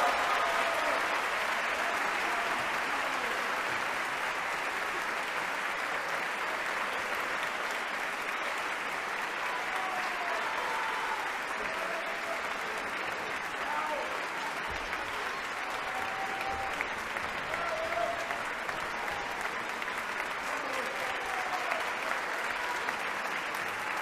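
Concert-hall audience applauding steadily, with scattered shouts from the crowd.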